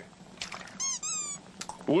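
A yellow rubber duck toy squeaking once as it is squeezed: a single high squeak of about half a second that falls in pitch toward its end.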